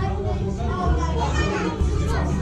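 Party chatter: several people, children among them, talking at once over background music.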